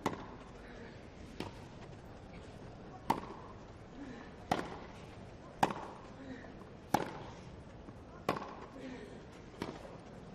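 Tennis racquets striking the ball back and forth in a baseline rally: eight sharp hits, roughly one every one and a half seconds.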